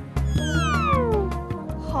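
A comic sound effect over background music: a single falling tone, about a second long, gliding downward over a low held bass note, followed at the very end by a short falling sigh.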